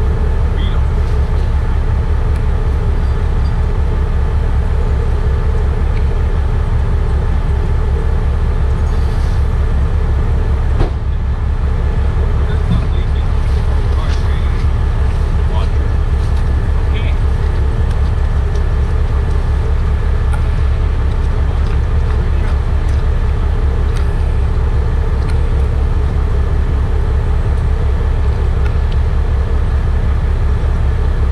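Large truck engine idling steadily, a loud, low, even rumble, with one sharp knock about eleven seconds in.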